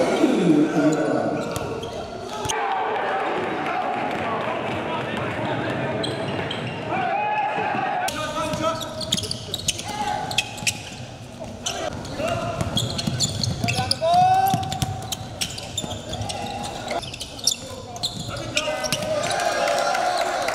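Live court sound in a big gym: a basketball bouncing on the hardwood floor in sharp repeated thuds, with short squeaks and voices echoing in the hall. The sound changes abruptly a few times where the footage is cut.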